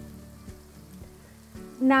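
Cornflour-coated paneer cubes sizzling softly as they shallow-fry in hot sunflower oil, under quiet background music with steady low tones. A woman's voice comes in near the end.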